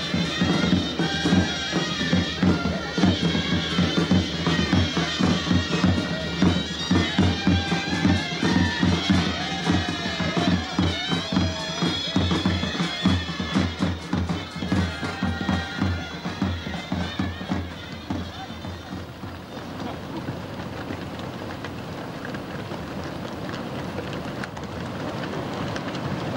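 Greek folk band music: a loud, reedy wind melody over a regular beating drum. About two-thirds of the way through it fades to a quieter, thinner sound.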